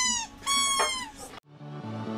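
Orange rubber squeaky toy squeezed twice, giving two high-pitched squeaks of about half a second each. About a second and a half in, electronic dance music cuts in.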